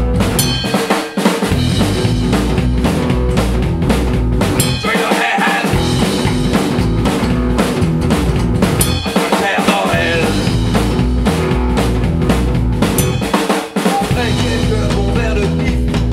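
Live psychobilly band playing an instrumental break on upright double bass, electric guitar and drum kit, with no vocals. The low end drops out briefly about every four seconds, while the guitar plays lead lines over the drums.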